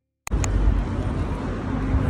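City street traffic noise with a deep rumble, cutting in abruptly with a sharp click about a quarter second in after silence.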